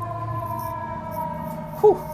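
Ambulance siren holding a steady tone that falls slightly in pitch, over low traffic rumble.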